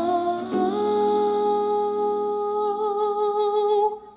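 A young male singer's voice holding one long, high sung note into a stage microphone, after stepping up to it about half a second in; the note wavers slightly near the end and breaks off abruptly.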